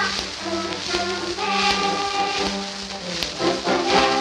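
Orchestral passage of a Japanese children's song playing from a Victor 78 rpm shellac record, held instrumental notes between sung lines. Surface hiss runs under it, with a faint click about every three-quarters of a second, once per turn of the disc.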